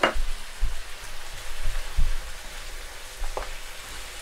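Curried chicken pieces frying in a wok, with a steady sizzle and a few low bumps as the wok and wooden spoon are handled for stirring.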